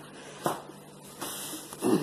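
A single sharp click about half a second in as a plastic play yard part snaps into place, followed by soft rustling of the frame and fabric being handled.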